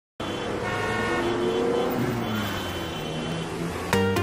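City street traffic with car horns honking, cutting in suddenly from silence. The song's electronic beat starts right at the end.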